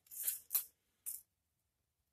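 Steel tape measure blade being pulled out in three short rasping pulls, the first the longest, all within the first second or so.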